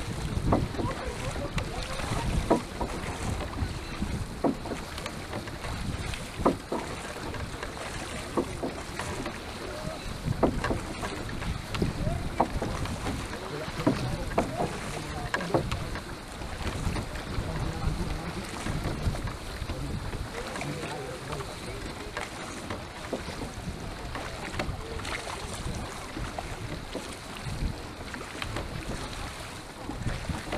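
Wind buffeting the microphone over water noise aboard a Venetian rowing boat under way, with irregular knocks every second or two from the oars working in their wooden oarlocks (forcole).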